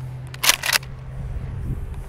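Pump-action 12-gauge shotgun being racked: the forend slides back and forward in two quick metallic clacks about half a second in, chambering a shell.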